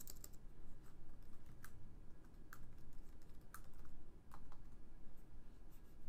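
Typing on a computer keyboard: a scattered, irregular run of separate keystroke clicks.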